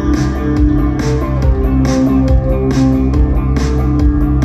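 Live post-punk band playing through the festival PA: a clean electric guitar melody over a steady bass line and a beat with a hit about twice a second.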